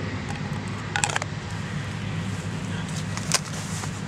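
Steady low hum of distant factory machinery, with a few short clicks and rustles as a knife is handled in its sheath, about a second in and again a little past three seconds.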